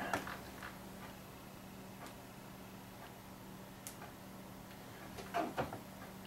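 Faint scattered clicks and taps of a two-pin Kenwood-style plug being worked into a handheld radio's jack that it will not line up with, with one sharp click about four seconds in and a few louder knocks just after five seconds. A steady low hum runs underneath.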